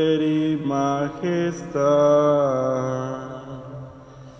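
A man's voice chanting a responsorial psalm verse in Spanish in short sung phrases, then one long held note that fades away near the end.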